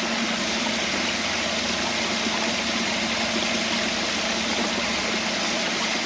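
Creek water falling over a rock face and pouring into and around a wooden micro hydro intake box, a steady rushing splash with a faint low hum underneath.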